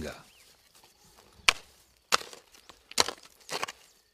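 A hand hoe chopping into soil and weeds between groundnut plants: about four sharp strikes, irregularly spaced, in the second half.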